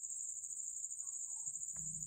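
A steady, high-pitched background trill runs on unchanged, with a faint tick near the end.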